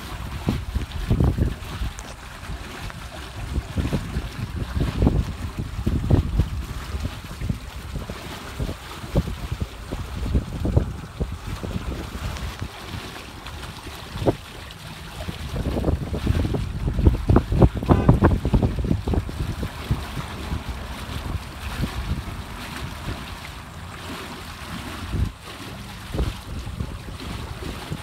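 Wind buffeting the microphone in irregular low gusts, strongest near the start and again a little past the middle.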